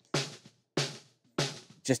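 Recorded snare drum from the bottom microphone, soloed and playing back in a loop: three sharp hits a little over half a second apart, each with a bright decay carrying the snare wires' (strainer) noise.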